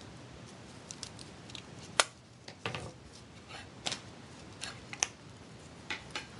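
Small scissors snipping the paper stamen tops off a mulberry paper flower: a few short sharp snips, the loudest about two seconds in.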